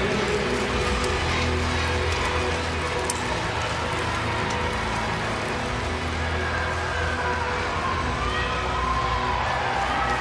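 Arena ambience in an indoor speed-skating oval: music plays over a steady low hum, with the crowd cheering. The cheering grows near the end.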